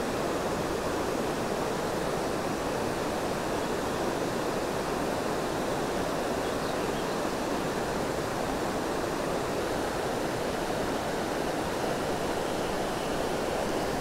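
Steady rushing of creek water running over a shallow rocky riffle, an even, unbroken wash of sound.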